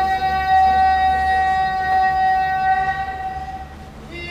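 A sumo yobidashi's sung call of a wrestler's name: one long held note on a single pitch, fading out near the end.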